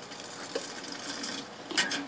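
Aquarium air stone bubbling, a fizzing hiss of rising air bubbles in the tank water, with one short sharp noise near the end.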